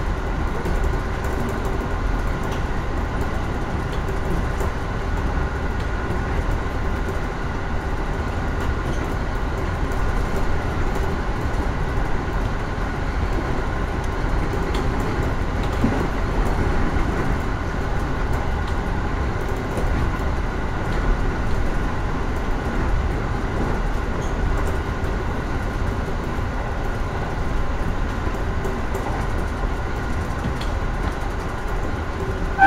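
Running noise heard inside the front cab of a JR 415-series electric train at speed: a steady rumble of wheels on rail with a constant whine and occasional faint clicks.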